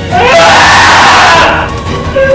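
A woman screaming in distress, one loud, harsh scream lasting about a second, with music underneath.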